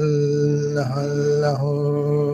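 A man's voice chanting a meditation mantra on one long held note at a steady low pitch, the vowel shifting briefly about a second in before the tone carries on.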